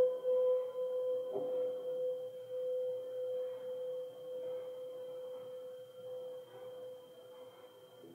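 A single piano note struck just before, held and slowly dying away over about eight seconds, its sound thinning to an almost pure tone. A faint tap comes about a second and a half in.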